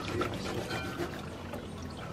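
Juice trickling through a metal mesh strainer into a plastic pitcher as a metal spoon presses the wet pulp against the mesh.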